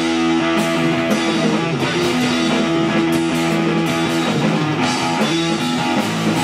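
Live rock band playing loud instrumental music: electric guitar through Marshall amplifiers holding long sustained chords over bass guitar and drums, the chord changing about four and a half seconds in and again near the end.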